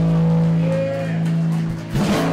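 A live country band holding its closing chord: guitars and bass ring out on steady sustained notes, with a short bend about three-quarters of a second in and a sharp closing drum hit near the end.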